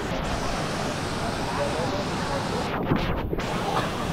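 Waterfall and stream water rushing, a steady even noise.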